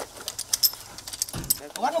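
Light metallic clicks and clinks as a crew handles and aims a mortar, working the tube and its sight. A dull thump comes about one and a half seconds in.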